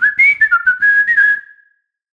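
A short whistled jingle: one high tone stepping up and down through a brief tune, with light clicks behind it, ending about one and a half seconds in.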